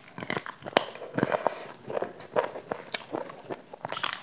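Close-miked chewing and mouth noises of someone eating chicken with her hands: an irregular run of short wet smacks and clicks.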